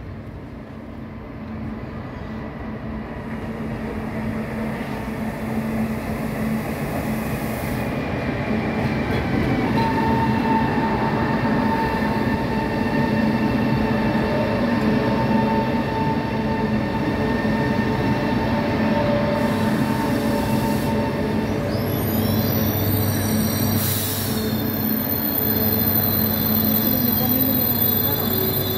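Renfe passenger train pulling into the platform and slowing to a stop, growing louder over the first ten seconds as it approaches. A steady squealing whine runs through the middle of its approach, and near the end come higher tones and a short hiss.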